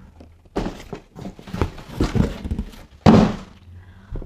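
Cardboard boxes being handled: a few light knocks and scrapes, then a loud thud about three seconds in as a boxed robot vacuum is set down on the table.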